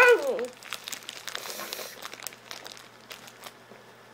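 Crinkling of a plastic wrapper being handled: irregular small crackles, busiest in the first half and thinning out toward the end.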